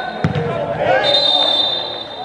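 Referee's pealess whistle (Molten Valkeen) blown: the end of one blast right at the start, then a second long, steady, high blast about a second in lasting most of a second. Players' shouts run under it, with a single sharp thump just after the start.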